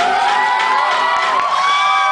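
Audience cheering, many high voices yelling and whooping over one another.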